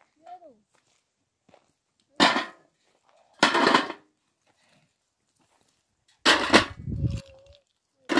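Stones dropped into a metal basin: three loud bursts of clatter, the second and third made of several stones landing together.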